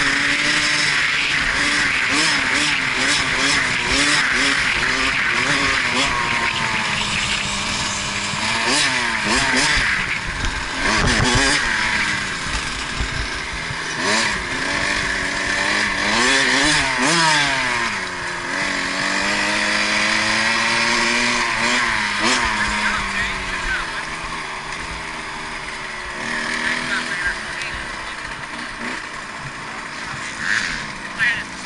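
KTM 65SX 65cc two-stroke single-cylinder dirt bike engine being ridden, its pitch rising and falling repeatedly as the throttle is opened and closed and gears change. In the last several seconds it runs quieter at low revs as the bike slows.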